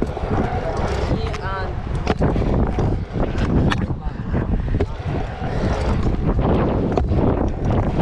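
Stunt scooter wheels rolling over a concrete skatepark bowl, a steady rumble with wind buffeting the microphone. A few sharp clacks of the scooter hitting the concrete break through.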